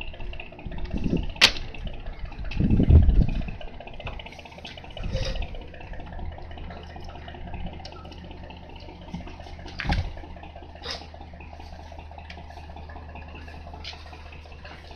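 Handling noises on a workbench: a few sharp clicks and short low thuds as test probes are put down and a soldering iron is picked up and worked on a circuit board, over a steady low hum.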